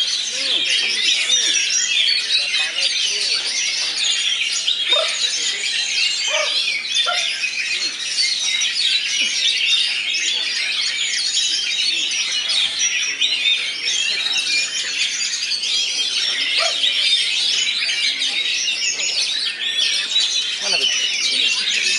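Caged oriental magpie-robins (kacer) singing, with many songbirds going at once in a dense, continuous chorus of rapid whistles and chirps.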